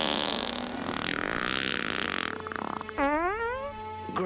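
Comedy fart sound effects from a person sleeping under a blanket: a long raspy one, then a squeaky one rising in pitch about three seconds in.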